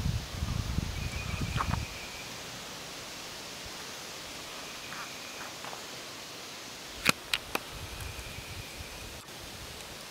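Outdoor forest ambience on a handheld camera microphone. Deep, irregular rumbling and handling noise runs for the first two seconds, then a steady faint hiss with a faint high trill that comes and goes a few times. Three sharp clicks come in quick succession about seven seconds in.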